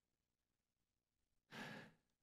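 Near silence, then one short breath of about half a second near the end, picked up close by a headset microphone.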